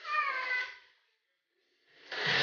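A short, high-pitched voice call that falls in pitch and lasts under a second.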